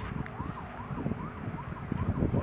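A faint siren sounding in quick, repeated rising-and-falling glides over a low rumble.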